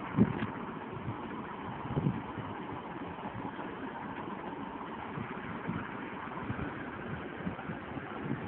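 Steady background hum, with two low bumps from a handheld camera being handled, one just after the start and one about two seconds in.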